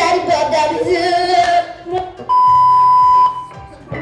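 Voices singing for about the first second and a half, then a single steady electronic beep lasting about a second, louder than the singing.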